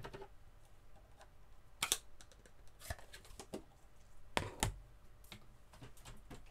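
Scattered light taps and knocks of papercraft items being handled and set down on a work mat, the loudest a pair of knocks about four and a half seconds in.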